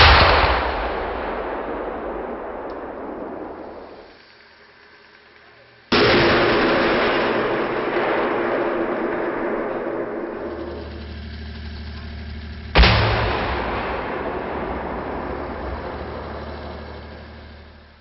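Three explosions of 155 mm BONUS submunition warheads, explosively formed penetrator charges, detonating against armour-plate targets. The first comes at the start, the second about six seconds in and the third about thirteen seconds in. Each is sudden and dies away slowly over several seconds.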